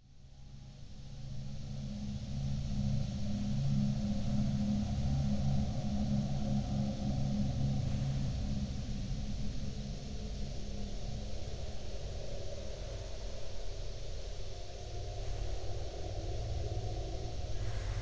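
Ambient drone music built from old ballroom dance-band recordings: a deep, murky hum fades in from silence over the first few seconds and then holds steady, with a faint hiss above it.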